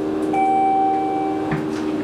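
A single steady electronic tone from the Schindler MT 300A elevator's signal, held for just over a second and cutting off sharply, over a steady low hum in the elevator cab.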